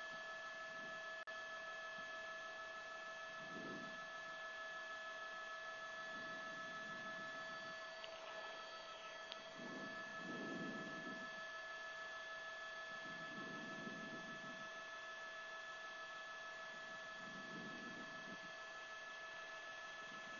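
Faint, steady electrical hum of several fixed tones on the live audio feed, with soft faint swells underneath every few seconds.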